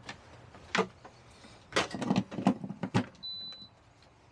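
Several knocks and rattles of a power plug and cord being handled and pushed into a wall socket, then one short high electronic beep.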